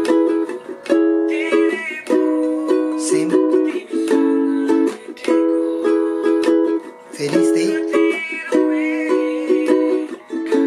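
Ukulele strummed in a steady rhythmic pattern, moving through the chords C♯m, B, A and E, each held for a second or two.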